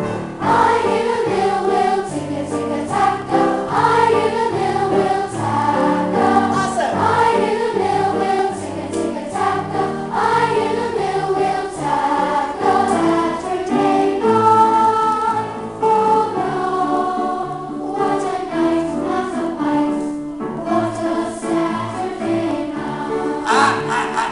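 A large children's choir singing together, a continuous run of sung phrases with held notes.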